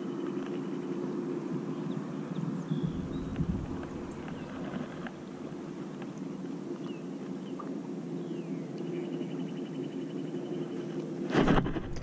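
A boat's motor humming steadily, with faint scattered ticks; a louder rush of noise comes near the end.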